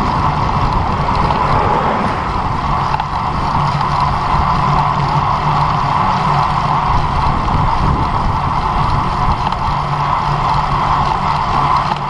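Steady rushing of wind and tyre road noise picked up by an action camera on a road bike rolling at about 23 km/h, with a constant low hum under it.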